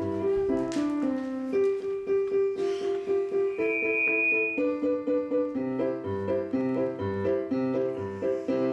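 Piano accompaniment playing a run of chords and melody notes, with a brief high thin tone held for about a second near the middle.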